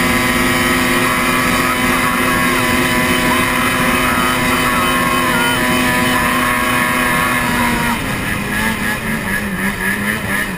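Snowmobile engine held at steady high revs while the sled skims across open water, then the revs drop and waver about eight seconds in as it nears the shore.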